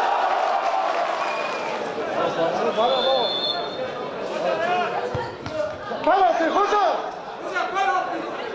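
Men shouting and calling out across a football pitch during play, loudest about six to seven seconds in, with a short, high referee's whistle blast about three seconds in.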